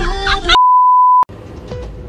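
A single steady electronic beep, one pure high tone, sounding loudly for about two-thirds of a second and cutting off abruptly with a click, after the background music ends about half a second in.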